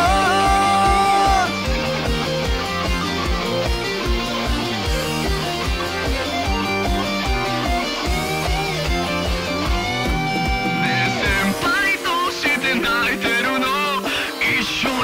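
Instrumental break in a rock-style band backing track, guitars over a steady kick drum at about two beats a second. It opens on the end of a held sung male note, and the male vocal comes back near the end.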